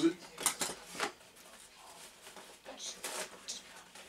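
A few short clicks and taps with light rustling as a box cutter is closed and the cardboard tube packaging is handled.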